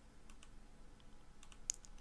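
A few faint, scattered clicks at a computer, made while selecting and placing a node with the mouse and keys.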